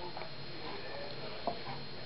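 Faint steady room noise with one soft click about one and a half seconds in.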